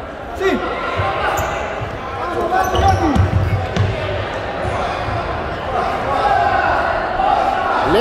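A futsal ball being kicked and bouncing on a hardwood gym floor, with low thumps mostly in the first half. Players' shouts and spectators' chatter echo through the hall.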